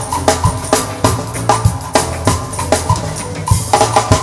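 A high-school stage band playing live, the drum kit to the fore with regular strikes about three a second. Bass guitar holds a steady line underneath, with short repeated notes higher up.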